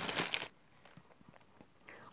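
Clear plastic clothing packet crinkling briefly as it is handled, then near silence with a few faint soft ticks.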